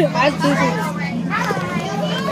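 Children's voices talking, unclear and overlapping, with a steady low hum underneath.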